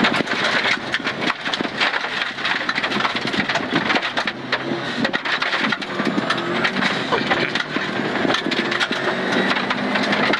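Rally car at speed on a gravel stage, heard from inside the cabin: a loud, constant crunching and clatter of gravel striking the underbody, with the engine note rising and falling underneath.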